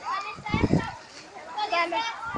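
Children's high voices shouting and calling out while playing in a swimming pool, with a short burst of noise about half a second in.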